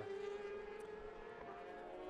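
Racing motorcycle engines running at high revs, heard at a distance as a steady high-pitched drone that fades a little, then holds.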